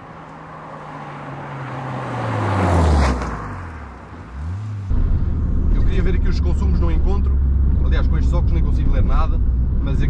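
A car drives past at speed: its engine note swells, then drops in pitch as it goes by, with a second short rise and fall just after. From about five seconds in comes the steady low drone of the Mitsubishi Colt CZT's turbocharged four-cylinder engine, heard from inside the cabin while driving.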